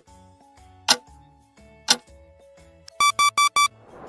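Quiz countdown-timer sound effect ticking about once a second over soft background music, then four quick electronic alarm beeps about three seconds in as the countdown runs out.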